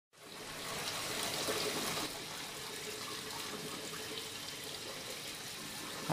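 Water running and trickling steadily in a backyard aquaponics system, fading in at the start and slightly louder for the first two seconds.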